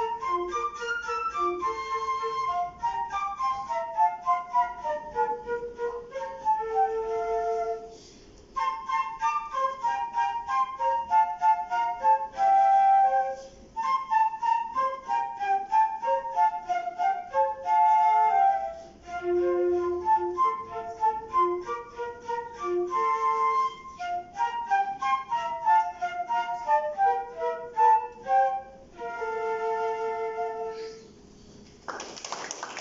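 Concert flute playing a fast, many-noted classical piece, with a second wind instrument playing along in a duet. There are brief pauses between phrases, and the playing ends on a long held note near the end.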